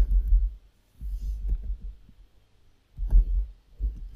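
Computer keyboard being typed on, heard mainly as dull, deep thumps in irregular bursts, as the keystrokes knock through the desk into the microphone.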